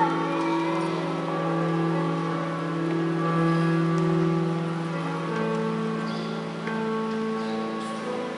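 Slow church hymn music with long held chords, the chord changing a few times.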